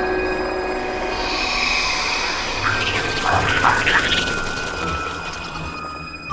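Spooky intro sound effects: an eerie held drone with an airy whoosh swelling in, then a cluster of short, high screeches about three to four seconds in.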